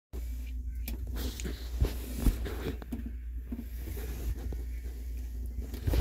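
A steady low hum, with scattered light knocks and rustles from the phone being handled and moved about, the loudest about two seconds in.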